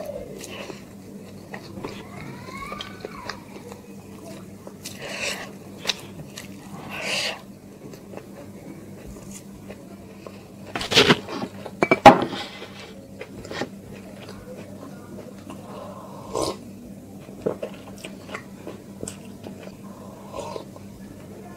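Close-miked chewing and wet mouth sounds of a person eating rice biryani by hand, with the loudest cluster of sharp smacks and crunches about halfway through. A steady low hum runs underneath.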